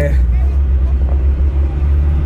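The 3.6 L VR6 engine of a Mk1 Volkswagen Jetta running at low revs, heard from inside the cabin as a steady low drone.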